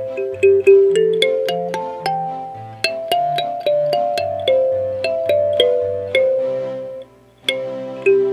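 Background music: a kalimba cover playing a gentle melody of plucked notes that ring and fade, with lower notes underneath and a brief pause about seven seconds in.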